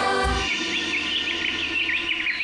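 Sustained background music that stops about half a second in, then birds chirping in quick, repeated high notes.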